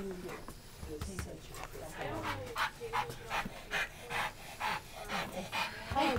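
A dog panting, quick breaths at about two to three a second.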